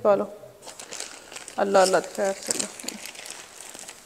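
Thin plastic bag crinkling as it is handled and folded. A few short spoken words at the start and again about two seconds in are louder than the crinkling.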